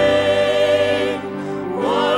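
Voices singing a slow contemporary worship song with instrumental accompaniment: a long held note that fades after about a second, then the next sung phrase rising in near the end.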